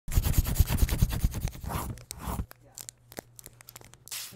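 Pencil scribbling on paper as a logo-intro sound effect: rapid, dense scratchy strokes for about two and a half seconds, then a few scattered faint ticks.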